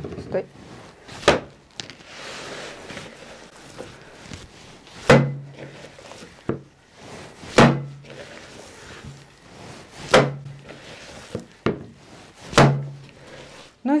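Rye-and-wheat dough with chopped herbs being kneaded and slapped down into a plastic mixing bowl: a heavy thump about every two and a half seconds, five in all, with softer kneading noise between.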